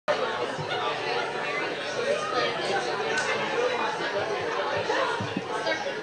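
Audience chatter: many voices talking over one another at once, with no single voice standing out.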